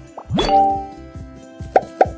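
Animation sound effects over background music with a steady beat: a quick rising swoosh about half a second in that rings on as a bright chime, then a short pop near the end as a chat-message bubble appears.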